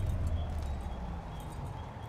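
A deep low boom from a trailer soundtrack, slowly fading, with faint irregular clicks and small high chirps over it.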